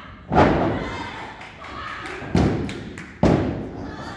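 Heavy impacts on a pro wrestling ring's mat as wrestlers go down: three thuds, the first and loudest about a third of a second in, two more near the end, each ringing briefly in the hall.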